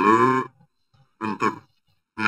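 A man speaking Indonesian: a drawn-out, held syllable at the start, a short pause, then a brief word.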